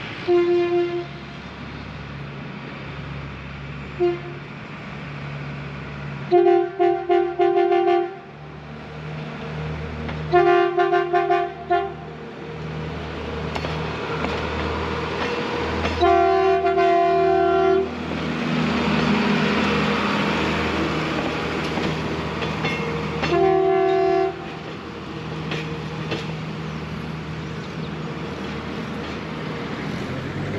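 Diesel passenger railcar sounding its horn again and again as a warning at a level crossing: a blast, a short toot, two runs of rapid stuttering toots, then longer single blasts. The diesel engine runs underneath, and the rumble of the train passing close swells after the longest blast.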